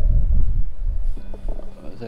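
Low rumble of wind buffeting the microphone, strongest in the first second and then easing off, under faint background music; a steady held note comes in about halfway through.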